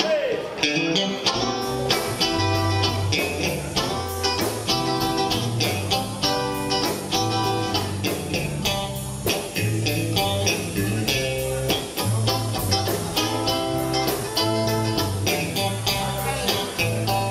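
Live blues band playing an instrumental passage: electric guitar, electric bass, drums and keyboard, with a steady drum beat starting about a second and a half in and the bass joining shortly after.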